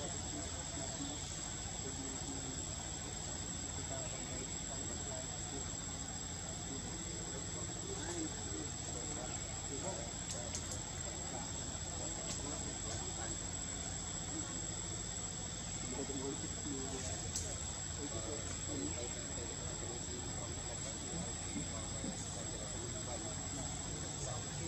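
Insects keeping up a steady, high-pitched drone, with faint voices of people some way off.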